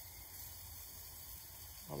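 Faint, steady background hiss with a low hum beneath it and no distinct events; a man's voice starts right at the end.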